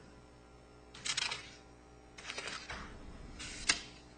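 Sheets of a multi-page paper document being handled and its pages turned, in three short rustling bursts about a second apart.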